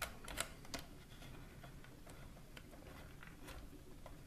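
A few light clicks and taps of a scope mount being handled on a rifle's 20 mm rail, most of them in the first second, then faint scattered ticks.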